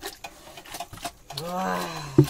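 Young pig eating wet feed from a bowl, a run of short wet chewing and smacking clicks, then a little over a second in a long, low, drawn-out call that rises and falls in pitch.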